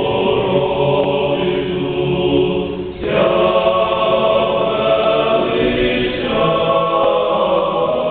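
A seminary men's choir singing Carpathian sacred chant of the Byzantine rite, unaccompanied, in long held chords. About three seconds in, the voices break off briefly and come back in on a new, brighter chord.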